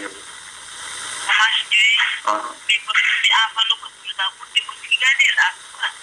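Speech: a person talking, with the thin, narrow sound of a phone line.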